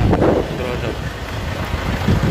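Wind buffeting a phone's microphone outdoors, a loud, uneven low rumble, with a brief bit of voice near the start.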